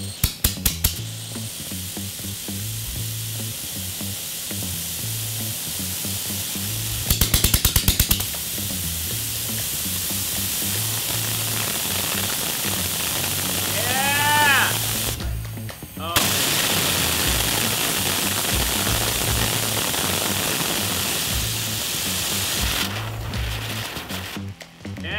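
3D-printed plastic jet engine running, its combustion making a loud, steady hiss. Short bursts of rapid sharp clicks or pops come just after the start and again about seven seconds in.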